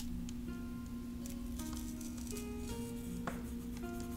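Background music with slow, held notes that change pitch step by step over a steady low drone, with a couple of faint light clicks.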